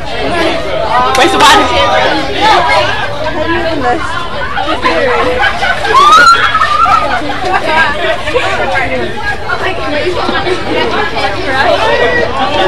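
Many spectators talking and calling out at once, an unbroken babble of overlapping voices with a couple of louder shouts, about a second and a half in and again around six seconds.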